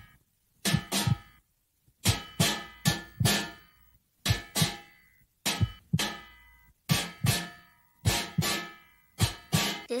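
Plucked guitar-like string instrument playing pairs of ringing notes in a slow, steady lub-dub rhythm, about one pair a second, in imitation of a mother's heartbeat.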